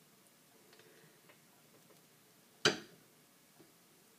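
Soft handling clicks, then a single sharp knock about two-thirds of the way in as the metal wire soap cutter is set onto its wooden board, and a faint tick shortly after.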